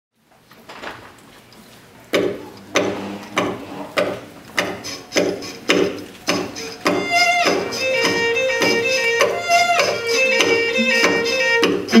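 String quartet of two violins, viola and cello playing: after a faint start, sharp rhythmic percussive strokes begin about two seconds in, roughly three every two seconds, and sustained bowed notes join over them about seven seconds in.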